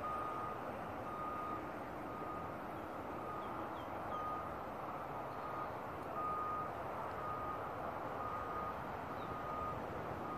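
A vehicle's reversing alarm beeping, one steady short tone about once a second, over a steady background hiss.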